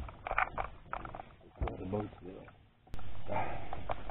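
Faint conversation between two men, then an abrupt click about three seconds in, followed by a steady rushing hiss.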